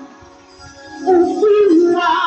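Women's voices singing a Sesotho gospel song. The singing breaks off for about a second, then comes back in on a held note with vibrato.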